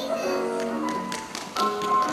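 Music playing with the quick clicking taps of tap shoes from children tap dancing on a stage.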